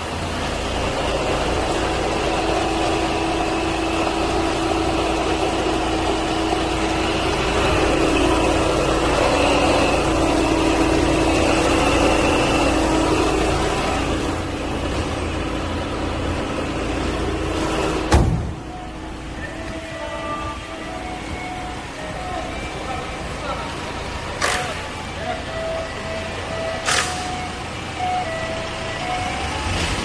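Volkswagen Jetta TDI diesel engine idling steadily, loud and close with the bonnet open. About 18 seconds in there is one sharp bang, typical of the bonnet being shut. After it the idle carries on quieter and more muffled, with a few sharp clicks and faint short tones.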